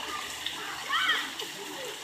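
Water spraying and splashing in a splash pad as a steady hiss, with children's voices; a child's high-pitched shout about a second in is the loudest sound.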